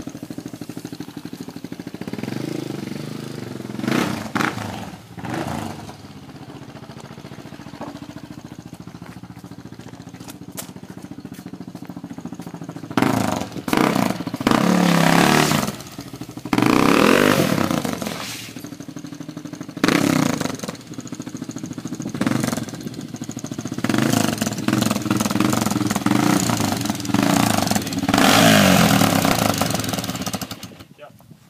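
Honda XR400R dirt bike's air-cooled four-stroke single-cylinder engine being ridden. It runs lower and steadier at first, then revs up and down in repeated loud surges from about halfway through.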